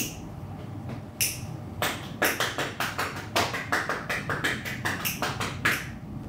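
Metal ear pick working inside the ear canal during an ear cleaning: two single crisp clicks, then a quick run of sharp scratchy ticks, about five a second, that stops just before the end.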